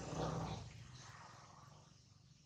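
A short, low animal call lasting about half a second near the start, then fading away.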